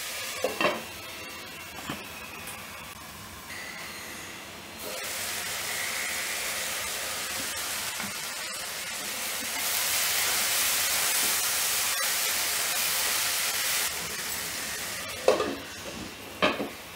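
Chopped tomatoes and onions sizzling in hot oil in a kadhai. The sizzle swells about halfway through and is loudest for a few seconds before the end. A glass lid clinks against the pan about half a second in and again near the end as it is set back on.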